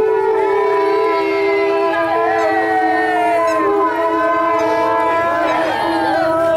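Wind instruments sounding loud, long held notes over a steady drone, with several notes bending up and down near the end.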